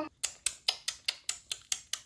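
A rapid, even series of sharp clicks, about seven a second.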